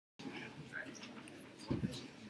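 Quiet auditorium room sound with faint, indistinct voices, then a brief low knock and rustle near the end as the podium microphone is touched.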